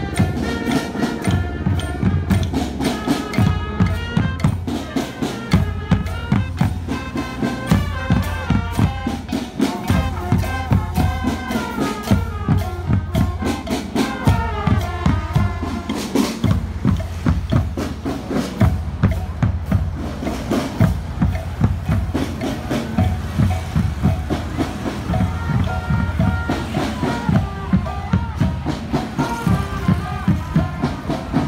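A marching band playing in the street: bass drums and other drums beating a steady march rhythm, with a tune over it.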